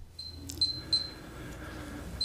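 A few short, high-pitched ringing ticks about a third of a second apart, with one sharper click among them, over quiet room tone.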